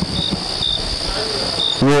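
Crickets chirping: a steady high trill with a few short, separate chirps over it. A man's voice starts near the end.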